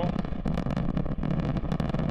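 The Antares rocket's two AJ26 first-stage engines firing in flight: a steady, dense low rumble with a crackling edge.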